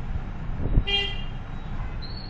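A dull low thump about a second in, followed at once by a brief pitched toot, over a steady low rumble.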